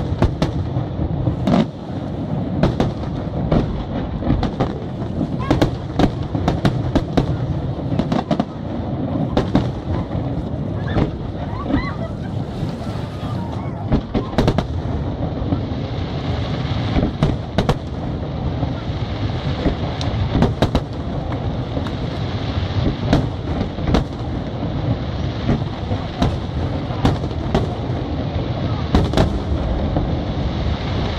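Aerial firework shells bursting in an irregular series of sharp bangs over a continuous low rumble. From about halfway, a dense crackling from glitter-star effects fills in between the bangs.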